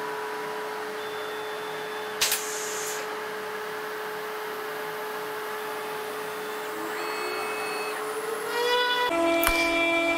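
CNC router running a V-bit job with dust extraction on: a steady spindle whine over the rushing of the extractor. There is a short sharp knock about two seconds in, and near the end a rising tone and several steady tones join in.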